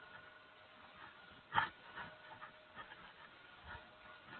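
Chalk tapping and scratching on a blackboard as words are written: one sharper tap about a second and a half in, then a run of lighter ticks. A faint steady hum lies underneath.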